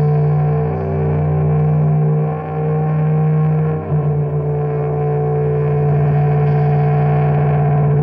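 Experimental drone music: a loud, distorted sustained chord held steady, shifting to a slightly different pitch about halfway through.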